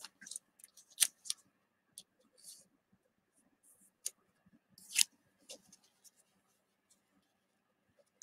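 1990 Fleer basketball cards being handled and shuffled through by hand: scattered light clicks and soft rustles of card stock, the sharpest about a second in and about five seconds in.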